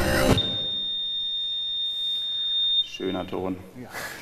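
Music cuts off and a single steady, high-pitched electronic beep holds for about two and a half seconds, then breaks off. A man's voice follows briefly near the end.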